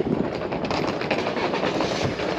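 Handling and wind noise on a handheld action camera's microphone while walking: a steady rough rustle with fast, uneven clattering.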